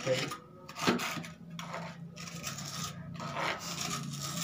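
A hand tool scraping over cement and tile in several irregular rasping strokes.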